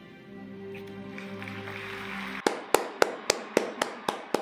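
Soft sustained music, then from about two and a half seconds in one person clapping slowly and evenly close to the microphone: sharp single claps, about three or four a second.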